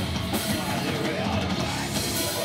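A live metal band playing at full volume, with the drum kit prominent in a dense, continuous wall of sound.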